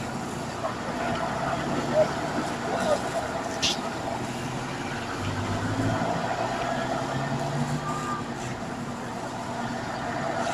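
Road traffic passing close by: vehicles driving past, with a deeper engine drone swelling in the middle as a vehicle towing a trailer goes by. A few short knocks in the first few seconds.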